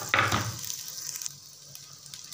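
Butter and chopped garlic sizzling in a pot, opening with a brief thump; the sizzle fades a little past halfway.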